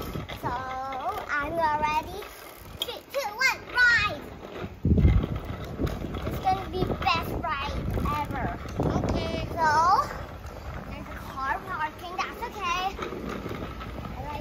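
A young child's high-pitched voice in short exclamations and chatter, with a few low rumbles mixed in.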